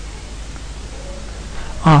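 Steady hiss of background noise from a voice-over microphone, with a man's voice starting near the end.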